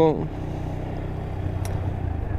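TVS Apache RTR 160 4V's single-cylinder engine running steadily as the motorcycle is ridden, heard through a helmet-mounted mic. A spoken word trails off at the very start.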